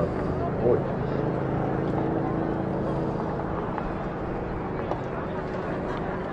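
Indistinct voices over a steady low hum, with no clear words.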